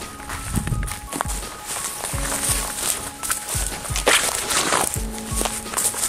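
Background music with held notes and a regular beat, over footsteps walking through grass and dry leaves, with louder rustles a little past the four-second mark.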